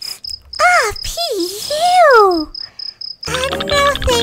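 Comedy cricket-chirp sound effect for an awkward silence: a high chirp repeating about four times a second. In the middle come two or three loud sliding, falling voice-like sounds, and music comes in near the end.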